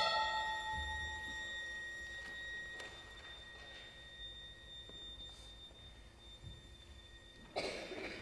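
Contemporary chamber sextet of two violins, viola, double bass, piano and clarinet in a quiet passage. A loud chord fades away over several seconds, leaving a thin, high held tone, and the ensemble comes back in with a sudden loud attack near the end.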